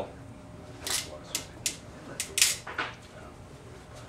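Bamboo culm being split by hand, the fibres cracking in about six sharp snaps as the split runs along the strip, the loudest about two and a half seconds in.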